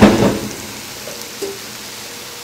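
Hot skillet of broiled asparagus with a parmesan-breadcrumb topping sizzling, a steady soft hiss, after a short loud burst of noise at the very start.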